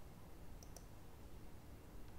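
Two sharp clicks close together a little over half a second in: a computer mouse button picking a point on screen. A faint low hum lies under them.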